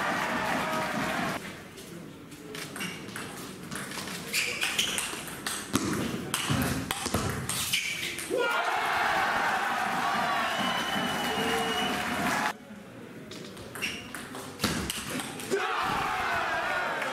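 Table tennis rallies: the ball clicking back and forth off bats and table for several seconds, twice. Each rally ends in a loud burst of crowd cheering and voices, the first about halfway through and the second right at the end.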